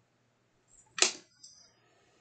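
One sharp click on a glass cutting mat about a second in, a hard tap while a paper frame is worked free with a craft knife, followed by a brief faint scrape.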